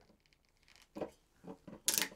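A rum bottle's cap being twisted open. There are a few faint handling sounds, then a sharp crack of the seal breaking just before the end.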